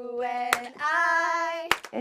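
A voice singing long held notes that waver slightly in pitch, with two sharp hand claps, about half a second in and near the end.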